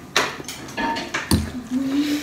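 A few short clinks and knocks of a metal utensil against a glass bowl, the sharpest near the start and about a second and a quarter in, followed by a brief low closed-mouth hum from a person near the end.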